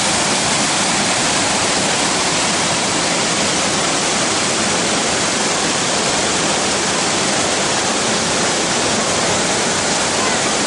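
Loud, steady rush of water flowing over rock in a shallow stream.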